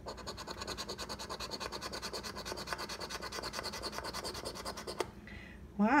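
A coin scratching the coating off a Cash Blast scratch-off lottery ticket in rapid back-and-forth strokes, several a second, stopping about five seconds in.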